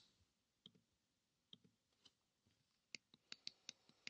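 Faint computer mouse clicks over near silence: a few spaced apart, then a quicker run of four or five in the last second.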